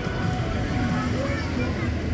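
Faint voices, like an announcer over a loudspeaker, over a steady low rumble of outdoor background noise.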